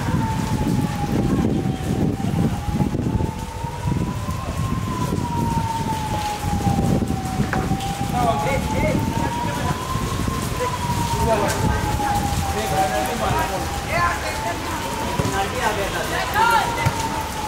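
A siren wailing slowly, its single tone rising and falling about once every five to six seconds, over a steady low rushing noise.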